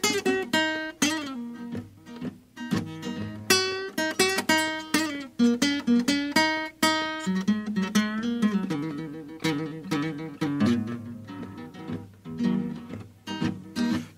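Solo acoustic guitar playing a country blues instrumental break: plucked single notes and chords, each struck sharply and left to ring.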